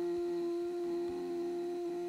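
A woman humming one long, steady note with her mouth closed.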